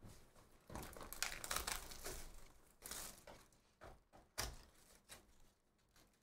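Plastic shrink-wrap crinkling and tearing as it is pulled off a cardboard trading-card hobby box, then a few light clicks as the box is handled and opened.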